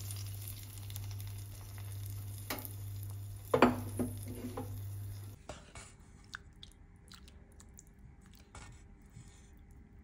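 A spoon stirring and scooping a thick mutton stew in a pan: soft wet squelches and light clicks, with one louder knock about three and a half seconds in. A steady low hum lies under the first half and stops suddenly about five seconds in, after which the stirring is fainter.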